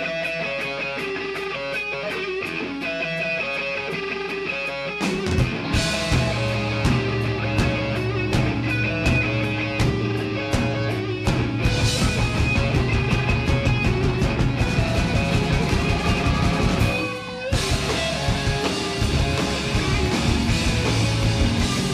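Live rock band playing: an electric guitar part over steady ticks, then the full band with bass and drums comes in about five seconds in. The band breaks off briefly near the end and comes straight back in.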